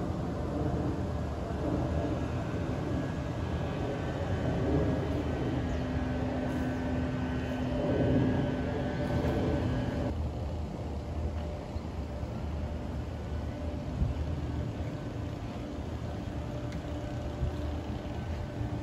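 Outdoor ambience: a steady low rumble of traffic. A low engine-like hum in the first half stops abruptly about ten seconds in, where the background changes.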